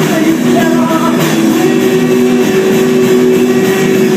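Live rock band playing: electric guitar over drums, with long held notes.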